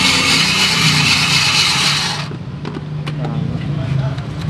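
Electric ice shaver grinding a block of ice into a bowl: a loud, steady rasp that cuts off suddenly a little over two seconds in, over a steady low hum. A few light clicks follow as the bowl is handled.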